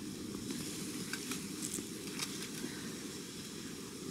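Faint rustling and crackling of soil, roots and leaves as a zonal geranium is worked loose from the bed by hand and lifted out, with a few light ticks.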